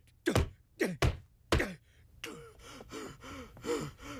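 Three dull thuds of a foot kicking an upholstered couch, about two thirds of a second apart, followed by a few quiet grunting vocal sounds.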